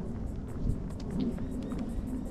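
Low rumble of wind buffeting the microphone during an outdoor walk, with a faint steady hum coming in about a second in.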